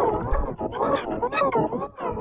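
Effects-processed cartoon-logo voice: a distorted, warbling vocal sound whose pitch bends up and down in quick waves, growl-like from the processing.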